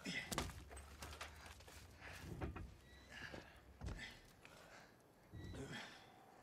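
Quiet film sound effects of armoured figures getting up and moving on debris-strewn ground: a string of soft thuds, rustles and footsteps, spaced about a second apart, with faint breaths.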